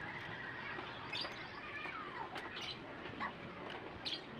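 Squeaks of a cloth rubbing over the wet plastic bodywork of a Yamaha Mio i 125 scooter as it is wiped dry. There are several short high squeaks, with one sliding down in pitch about two seconds in.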